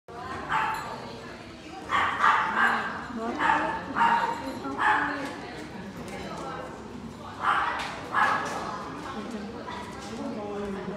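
A dog barking repeatedly in short, high-pitched barks, about nine in all, coming in clusters with a pause of a second or two past the middle.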